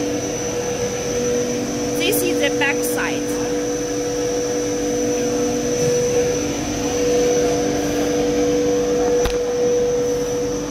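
Polyethylene film blowing machine running: a steady mechanical drone with several constant whining tones, and a sharp click near the end.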